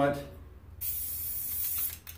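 Aerosol spray-paint can spraying gray paint onto a rifle in one steady hiss of about a second, starting just under a second in and cutting off near the end.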